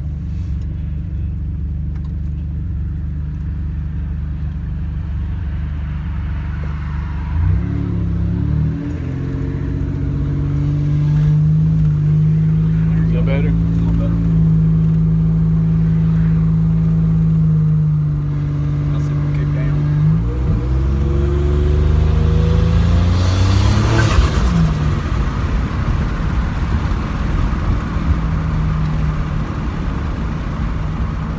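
Buick Grand National's turbocharged 3.8-litre V6 heard from inside the cabin while driving. Its note holds steady, then changes pitch about a quarter of the way in and again about two-thirds through as the automatic shifts, and climbs to a brief loud rushing sound before settling. The transmission is still shifting too quickly, which they put down to the throttle-valve cable.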